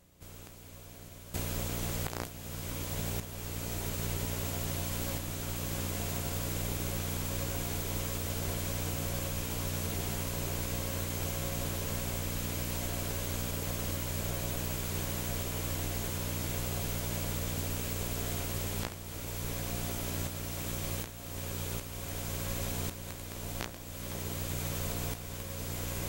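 Steady hiss with a low electrical hum, the noise of an analogue video recording's audio track with no programme sound on it. It starts suddenly about a second in and dips briefly several times near the end.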